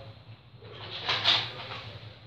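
Electric guitar amplifier humming steadily between playing, with a short rush of noise about a second in.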